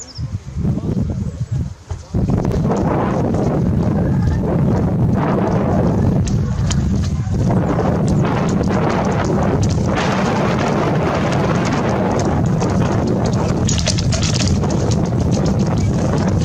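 Horses galloping past and jumping a ditch, their hooves thudding on turf, under a heavy rumble of wind on the microphone that sets in about two seconds in.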